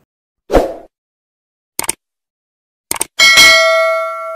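Subscribe-button animation sound effect: a short thump about half a second in, quick double clicks near two seconds and again at three seconds, then a loud bell ding that rings on and slowly fades.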